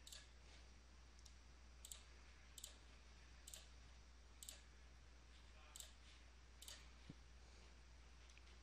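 Near silence with faint, short clicks at irregular spacing, about one a second, over a low steady hum.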